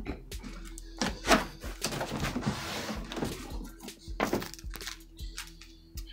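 Cardboard keyboard box being handled and shifted on top of another box: a few dull thumps and a scrape of cardboard, over faint background music.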